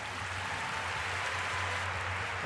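Large arena audience applauding steadily, the even clatter of many hands clapping.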